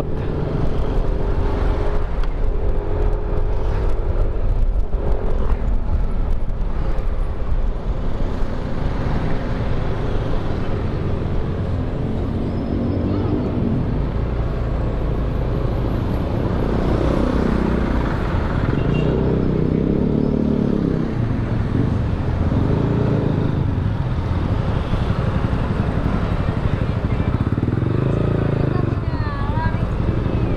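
Motor scooter engine running while riding slowly in traffic, its note rising and falling with the throttle over a steady low rumble.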